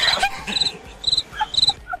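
Crickets chirping, dropped in as a comic sound effect: three short trilled chirps about half a second apart, after a sharp click as the music cuts out.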